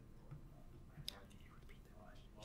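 Faint, low-voiced speech close to a whisper, too quiet to make out, with a single small click about a second in.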